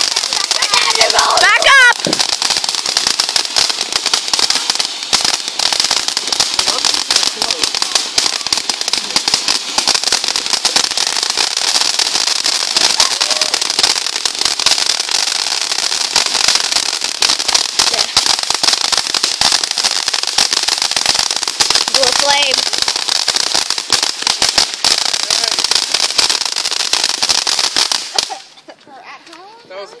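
A ground fountain firework spraying sparks with a dense, steady crackling hiss that runs on unbroken, then cuts off suddenly near the end as the fountain burns out.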